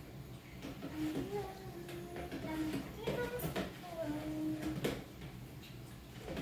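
A voice singing held notes, with a few sharp clicks of a metal spoon against a plastic pitcher as a drink is stirred, about three seconds in and again near five seconds.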